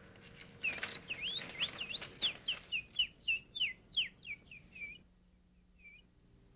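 A man whistling an imitation of birdsong: a rapid run of chirping whistled notes, each swooping up and down. It starts under a second in and stops about five seconds in.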